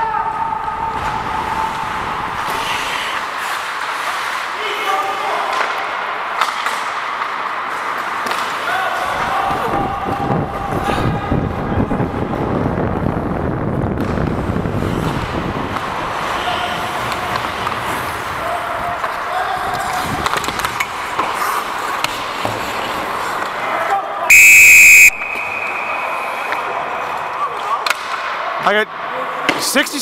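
Ice hockey play on a rink: steady noise of skating and play with faint shouts from players, then about 24 seconds in, one short, loud, shrill blast of the referee's whistle, the loudest sound, stopping play for a penalty.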